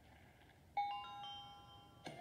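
Wheel of Fortune toss-up puzzle chime: about three-quarters of a second in, a bright electronic ding sounds, and more ringing tones join in quick steps and hold. It marks letters popping up one by one on the puzzle board.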